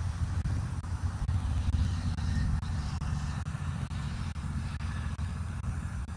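Road traffic: a vehicle passing on the road below, a steady low rumble that swells about one to three seconds in.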